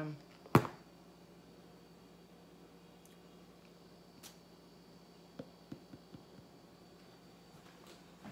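A single sharp knock as a clear cup of layered acrylic paint is flipped and set down upside down on the canvas for a flip-cup pour. A few faint small taps follow over low room tone.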